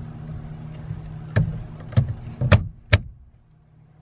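Overhead wooden cabinet doors in a small camper trailer being pushed shut one after another: four sharp knocks and latch clicks about half a second apart, starting about a second and a half in, the third the loudest. A steady low hum runs under them and fades out after about three seconds.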